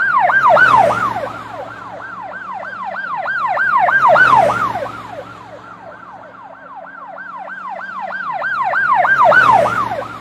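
An emergency siren in a fast yelp, about three pitch sweeps a second, growing louder and fading away three times.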